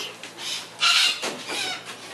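Long-billed corella giving one loud, harsh screech just under a second in, followed by quieter rasping calls.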